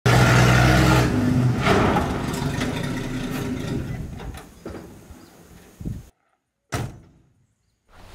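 Old Chevrolet pickup's engine running loud as the truck slides on a dirt track, then fading away over several seconds. A few short knocks follow near the end, with brief moments of silence between them.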